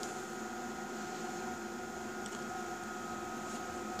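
Steady hum and whir of running bench electronic test instruments, an AC power calibrator and power analyzer, with cooling fans and a few faint fixed tones; a faint click about two seconds in.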